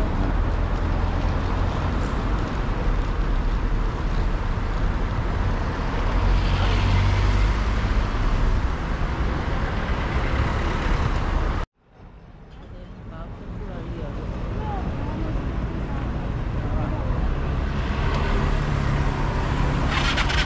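Street traffic: a steady wash of cars and motor vehicles going by, with a heavy low rumble. A little over halfway through, the sound cuts out suddenly, then fades back in over a few seconds.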